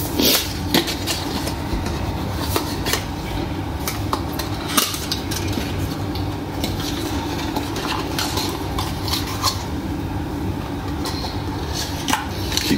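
Hands opening a small cardboard bulb box and handling its packaging and the plastic headlight housing: scattered light clicks, taps and rustles over a steady background hum.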